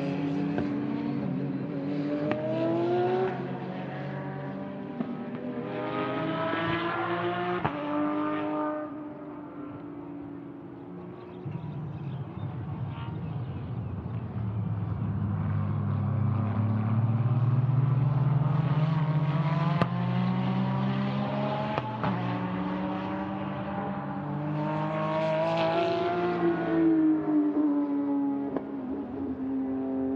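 GT3 race car engines at full throttle on a circuit, the pitch climbing and dropping back with each gear change as cars accelerate past. Through the middle one engine note climbs slowly from low, and near the end another rises and falls away as a car goes by.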